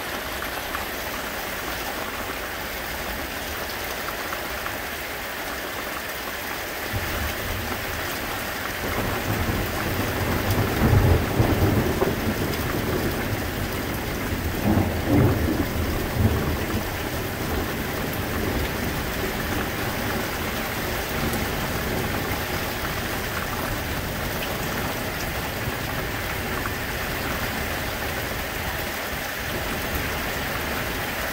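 Steady rain hissing, with a long roll of thunder that builds about seven seconds in, swells twice, and rumbles away by about twenty seconds.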